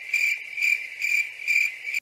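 Cricket-chirp sound effect cut in abruptly: a steady, high, evenly pulsing chirp that stops sharply when the talking resumes. It is the comic 'crickets' gag that marks an awkward silence after a weird remark.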